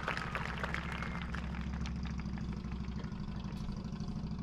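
Crowd applause dying away to scattered claps in the first second or so, over a steady low mechanical hum with an engine-like drone.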